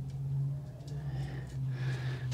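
A steady low hum with no clear knocks or taps.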